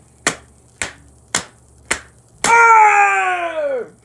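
Five sharp clicks evenly spaced about two a second, then a loud, drawn-out cry from a man's voice that slides down in pitch for over a second.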